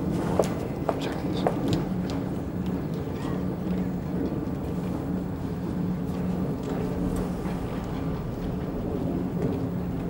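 Steady outdoor background rumble with a low, even hum, and a few faint clicks in the first two seconds.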